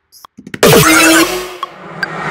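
Dubstep build-up playing back from a music production session. A loud, dense electronic burst enters about half a second in with a downward pitch swoop, eases off, then swells back up like a riser toward the end.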